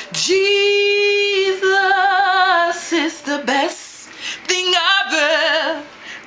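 A woman singing a gospel song solo and unaccompanied. She holds one long steady note, then sings shorter phrases with a wide vibrato, with brief breaths between phrases.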